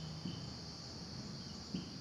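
Faint marker strokes on a whiteboard, with a light tap near the start and a sharper one near the end, over a steady high-pitched background drone.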